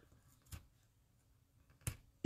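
Near silence: room tone with two faint short clicks, one about half a second in and one near the end.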